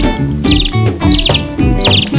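Upbeat background music with a rhythmic bass and plucked notes. Short high bird-like chirps with a quick trill come twice over it.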